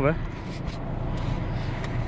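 Tractor engine running steadily at the slurry tanker, with the tail of a man's word right at the start.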